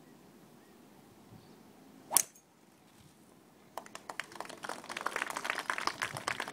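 A golf club strikes the ball on a tee shot: one sharp, loud crack about two seconds in. About a second and a half later, spectators' applause starts and builds, a dense run of claps that carries on to the end.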